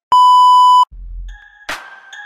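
The steady test-tone beep that goes with TV colour bars: one loud, high, unwavering tone lasting under a second that cuts off abruptly. A low rumble, a sharp hit and steady electronic tones follow.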